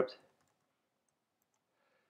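The end of a spoken word, then near silence: room tone.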